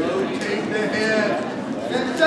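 Spectators and coaches shouting to the wrestlers, overlapping voices with a drawn-out call.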